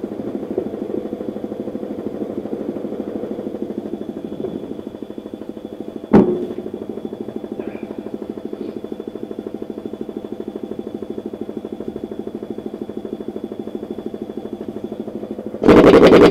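An air compressor runs steadily with a pulsing hum. About six seconds in there is a single sharp clank. Near the end a pneumatic impact wrench hammers loudly for about a second on the tractor's rear-wheel nuts.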